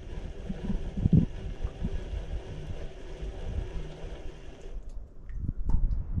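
Baitcasting reel being cranked in, a steady gear whir that stops suddenly about five seconds in, over low rumbling wind on the microphone.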